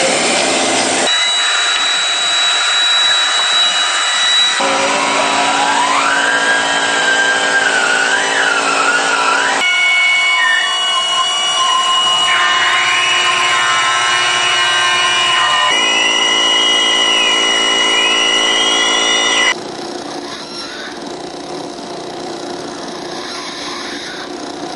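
Harsh experimental electronic noise from homemade electronic instruments and a knob-turned mixer: hiss under steady tones and sliding, whistling pitches, switching abruptly to a new texture every few seconds and turning quieter near the end.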